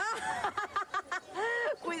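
Voices talking and laughing, with a longer drawn-out vocal sound near the middle.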